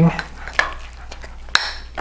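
Metal fork stirring thick, doughy batter in a mug, with light repeated clicks and scrapes of the tines against the mug's sides and one sharper clink about one and a half seconds in.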